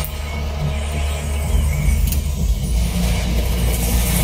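TV trailer soundtrack: music over a heavy, steady low rumble.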